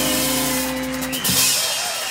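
A live blues band's final held chord ringing out on bass, guitars and piano, closed off by a few quick drum and cymbal strokes about a second in, after which the chord stops.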